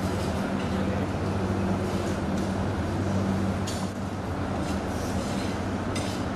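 Steady low hum under a dense, even background rumble of a crowded hall, with a few brief soft rustles or clinks.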